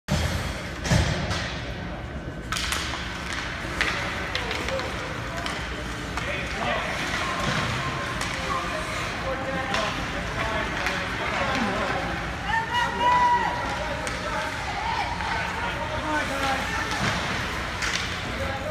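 Youth ice hockey game in an indoor rink: sharp knocks of sticks and puck in the first few seconds, with a steady background of skating and arena noise, and spectators' voices and shouts through the rest of the play.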